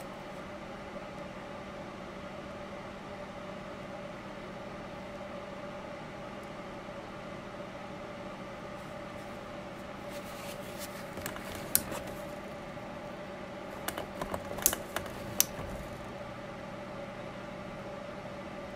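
A small electric motor hums steadily, with a few light clicks and taps in the second half.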